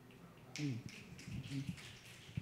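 Faint, scattered finger snapping from an audience in approval as a speaker finishes, with a faint murmur of voices.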